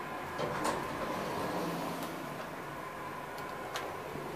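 1989 Toshiba traction elevator stopping at a floor and its doors sliding open: a steady hum, a knock about half a second in, and a few sharp clicks near the end.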